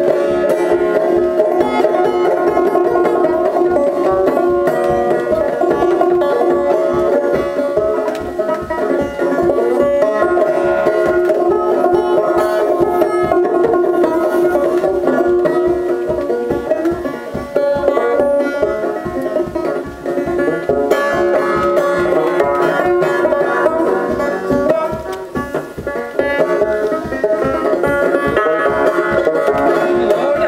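Solo banjo played live, a steady, fast, rhythmic picking pattern with no singing.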